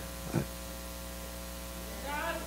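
Steady electrical mains hum, a low buzz with many even overtones.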